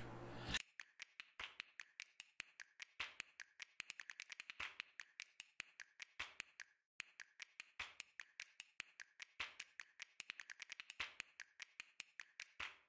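Faint, irregular rapid clicks and crackles of hands handling cylindrical lithium-ion battery cells and peeling off their plastic wrapping, with a brief pause about seven seconds in.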